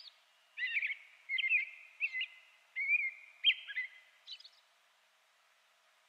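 A small songbird singing a series of short, quick chirping phrases, about two a second, that stop a little after four seconds in.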